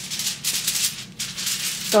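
Aluminium hair foil crinkling and rustling as a sheet is handled, in a run of short rustling bursts with a brief pause just past the middle.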